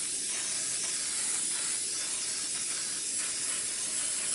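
Aerosol can of Baker's Joy baking spray hissing in one long, steady spray into a Bundt cake pan, coating it so the cake won't stick.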